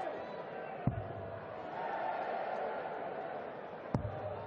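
Two darts thudding into a dartboard, one about a second in and one near the end, over a steady murmur of the arena crowd.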